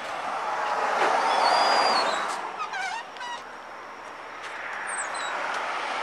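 A car passing on the road, its tyre and engine noise swelling over the first two seconds and fading away, with a few short high chirps in the middle and another vehicle approaching faintly near the end.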